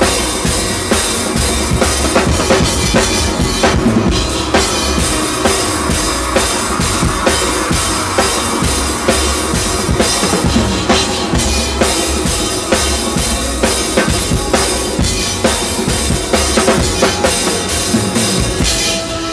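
A drum kit played live with sticks, close and loud, over a full band playing a bachata song. Kick drum, snare and cymbals keep up a steady run of hits through the music.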